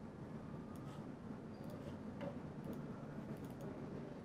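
Quiet room tone with a few faint, scattered clicks, the clearest a little over two seconds in.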